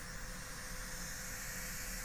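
Long drag on a Dreadnaut 26650 hybrid mod with a dripper atomizer: a steady hiss of the firing coil vaporizing e-liquid and air being drawn through the drip tip.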